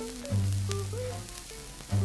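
A 78 rpm shellac record playing a slow torch ballad: a sung note ends at the start, then the trio's instrumental accompaniment with two long low notes and a few higher notes, over steady surface hiss and crackle.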